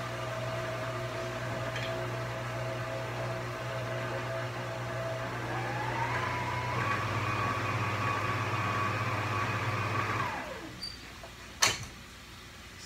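Stand mixer motor running steadily as its paddle beats a stiff hot water crust dough. About halfway through, the speed is turned up and the whine rises in pitch and holds. The motor then winds down and stops, followed by a single sharp click near the end.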